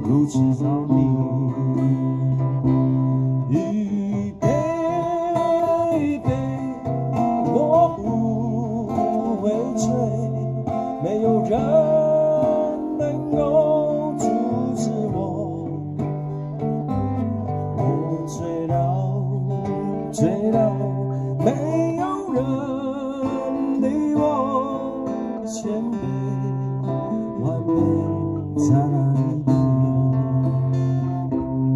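Live acoustic music: two acoustic guitars strummed and picked over a hand-played djembe, with a man singing.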